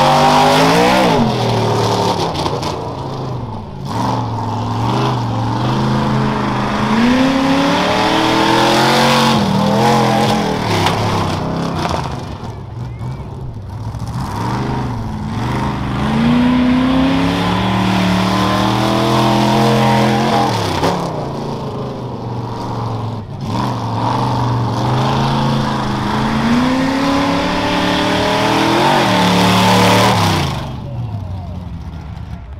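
Modified 4x4 race truck's engine revving hard and easing off over and over as it runs the course, its pitch climbing and dropping every few seconds.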